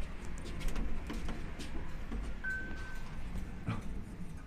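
Mitsubishi AXIEZ elevator: a single short electronic beep about two and a half seconds in, over a low steady hum, with light clicks and a sharper knock near the end.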